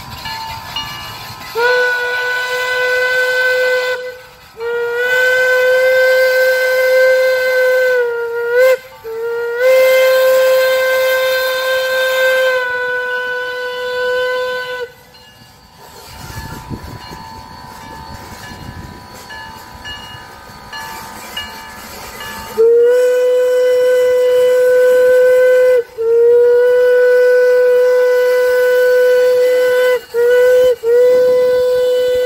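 Steam locomotive whistle on a small H.K. Porter engine, blowing a series of long blasts. Three come close together, then a pause of several seconds with the train running quietly, then two more long blasts near the end. Each blast starts with a slight upward bend in pitch before it holds steady.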